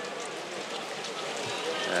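A pack of cross-country skiers skating on packed snow: a steady mix of ski scrape and pole plants.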